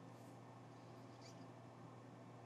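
Near silence: room tone with a steady low hum and two faint, tiny clicks, the second a little past a second in.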